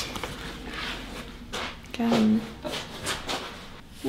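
Rustling and brushing of car-seat upholstery fabric as a cut panel is handled and laid against a person's back, with a brief voice sound about two seconds in.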